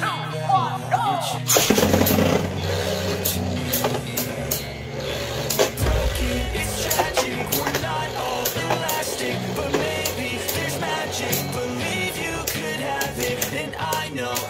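Background music with a song, over two Beyblade spinning tops whirring and knocking together in a plastic stadium, with many irregular sharp clicks from their clashes.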